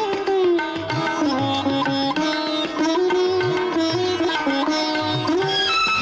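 Music from an old Tamil film song: a melodic passage led by plucked string instruments over a bass line, with no words recognised.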